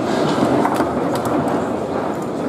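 Table football (foosball) in fast play: the ball rolling and clacking off the plastic players and the rods rattling, with several sharp clicks in the middle, over steady hall noise.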